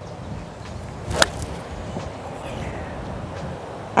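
A nine iron striking a golf ball off the fairway: one sharp click about a second in, over steady wind noise on the microphone.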